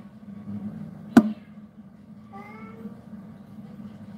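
A single sharp knock about a second in, then a cat's short meow, over a steady low hum.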